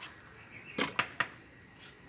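Mason's steel trowel scraping and knocking against a metal mortar pan: three quick, sharp strokes about a second in.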